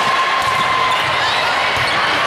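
Volleyball rally in a large indoor hall: a few dull thuds of the ball being struck and hitting bodies or the floor, about half a second in and again near the end, over the steady chatter of players and spectators.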